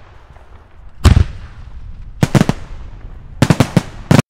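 Sharp bangs of an animated logo intro's sound effect: one loud crack about a second in, a quick run of three a little after two seconds, and four more in quick succession near the end, each with a short ringing tail.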